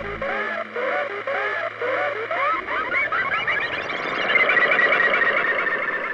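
Electronic dance music: a repeating swooping synth figure over a bass line. The bass drops out shortly in, and the figure quickens and climbs into a held high tone near the end.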